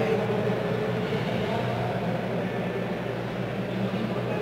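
Steady background noise of a large hall picked up by the stage microphone: a low electrical hum with a faint murmur of distant voices.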